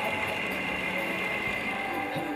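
Electric cotton candy machine running with a steady motor hum as its spinner head turns and floss builds up.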